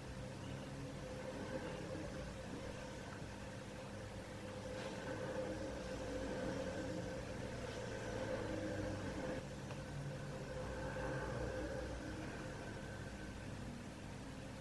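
A quiet, steady mechanical hum with a few fixed tones, swelling and easing slightly in level a few times.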